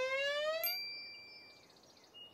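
Cartoon sound effects: a smooth, rising whistle-like tone that stops with a click just over half a second in, followed by a thin, bright, bell-like ringing that fades.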